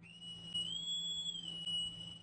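A high, thin electronic whistle-like tone from a title-card transition sound effect, held steady over a low hum. It bends up slightly in pitch about two-thirds of a second in and settles back down near the end.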